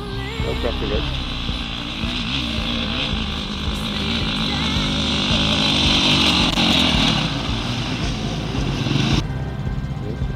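Off-road motorcycle engines running, with rushing wind-like noise, under a background music track with a steady bass. The engine and rush noise cut off suddenly about nine seconds in.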